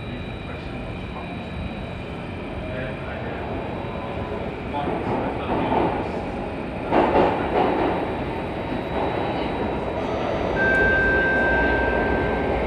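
Interior running noise of an Alstom Metropolis C830 metro train on Singapore's Circle Line, wheels rumbling on the track as it runs through the tunnel. The noise swells about five seconds in and a steady high tone joins near the end.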